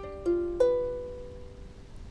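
Ukulele sounding a G7 chord: three quick strokes in the first second, the last the loudest, then the chord rings and fades away.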